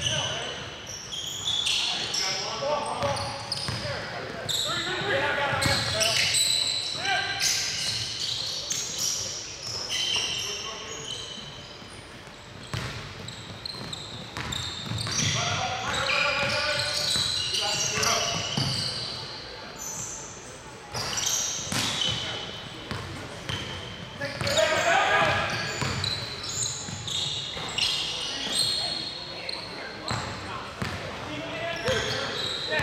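A basketball game on a hardwood court: the ball bouncing on the floor at intervals, with players' indistinct calls and voices, all echoing in a large gym.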